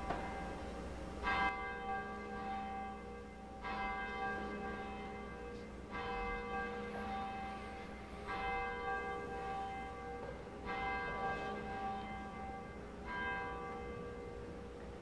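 A single church bell tolling slowly, struck six times about every two and a half seconds, each stroke ringing on until the next.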